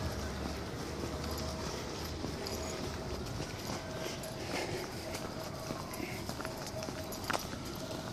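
Footsteps on wet, slushy pavement, with a faint steady hum underneath.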